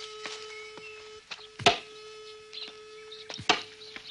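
Two sharp axe blows on wood, about two seconds apart, the first the louder, over a faint steady held tone.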